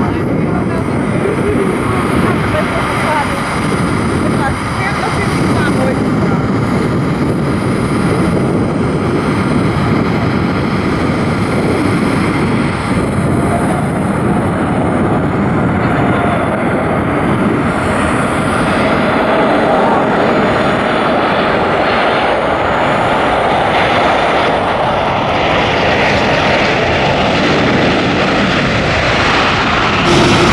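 Boeing 747-8F freighter's four turbofan jet engines on landing approach: loud, steady jet noise with a faint whine coming through around the middle.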